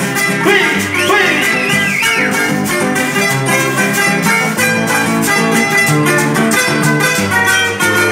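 A live guitar group playing an instrumental passage of a vallenato paseo: acoustic guitars picking a melody over a bass line, with hand percussion keeping an even beat. A brief wavering high tone rises and falls about a second in.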